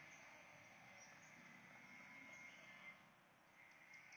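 Near silence: faint outdoor background hiss with a faint steady high note running through it.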